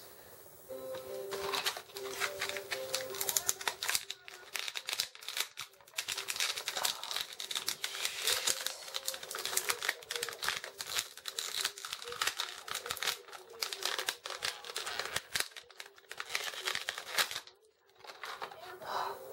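Stiff plastic blister packaging crinkling and clicking in a dense, irregular run of sharp crackles as an action figure is worked loose from its tray. The crackling stops briefly just before the end.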